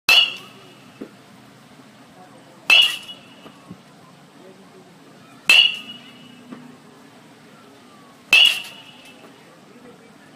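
Baseball bat hitting tossed balls four times, about every three seconds: each hit is a sharp crack with a brief ringing tone.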